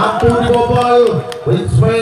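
A voice holding long, drawn-out sing-song notes, with low thudding beats underneath.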